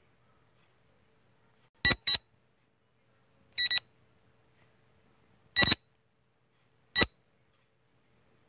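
Quiz countdown-timer sound effect: short electronic beeps, the first three as quick double beeps, coming about every one and a half to two seconds with silence between.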